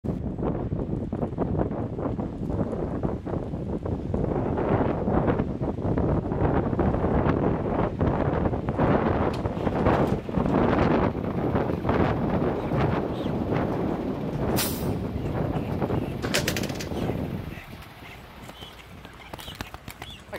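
Heavy trucks running close by, with rumble, knocks and clatter, and a short high hiss about three-quarters of the way through. The noise falls away sharply near the end.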